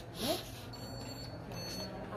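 Card payment terminal giving a high-pitched electronic beep, lasting over a second and starting a little under a second in, as a bank card is held to it to pay.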